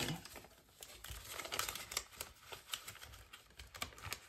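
Paper banknotes rustling and crinkling softly as they are handled and slipped into a clear plastic binder pocket, with scattered faint ticks.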